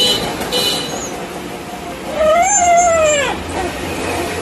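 A dog whining in excited greeting: one long, high cry about two seconds in that rises and then falls in pitch.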